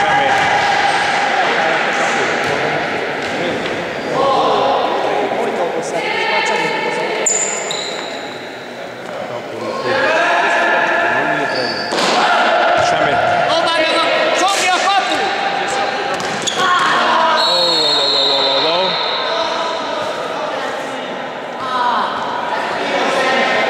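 Futsal ball being kicked and bouncing on a gym floor in a few sharp knocks, amid players' shouts that echo around the sports hall.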